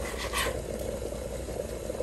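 Chef's knife slicing a jalapeño lengthwise on a wooden cutting board: quiet cutting with one brief, sharper sound about half a second in, over a low steady hum.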